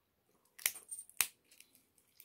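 Boiled shellfish shell being cracked and peeled apart by hand: a crackling snap a little over half a second in, then a sharp crack about half a second later, with faint clicks of shell around them.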